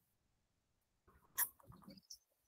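Near silence on the call line, broken by one short, faint sound about a second and a half in.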